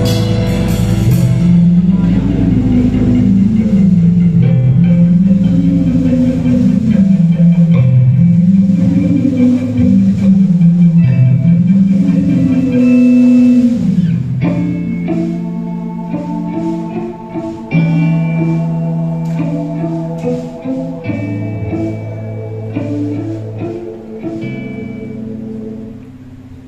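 Live rock band playing an instrumental passage with electric guitars, bass guitar and drums, no vocals. About halfway through the arrangement changes: the rolling bass line gives way to held chords with drum and cymbal hits, and the music gets quieter toward the end.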